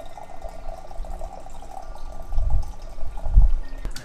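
Coffee poured in a steady stream from a stainless steel carafe into a mug, stopping just before the end, when the carafe is set down with a knock. Two low rumbles come through about two and a half and three and a half seconds in.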